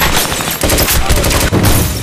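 Rapid pistol gunfire: many shots in quick succession, coming in several bursts.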